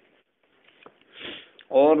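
A man's short, audible intake of breath in a pause between sentences, followed by his speech resuming near the end.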